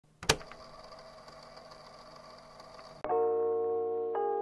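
A sharp click about a quarter second in, followed by a faint steady hum. About three seconds in, music starts abruptly with sustained bell-like mallet tones.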